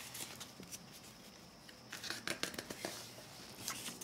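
Paper booklet being turned and opened by hand: faint rustles, scrapes and light taps of the pages, most of them about two to three seconds in.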